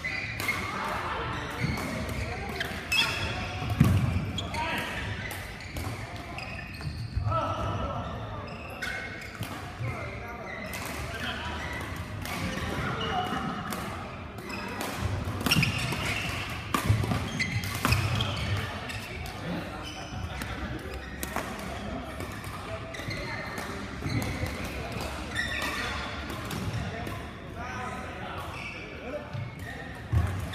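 Badminton play in a large hall: rackets striking a shuttlecock in sharp clicks, repeated throughout, with thuds of players' feet on the court, the loudest about four seconds in.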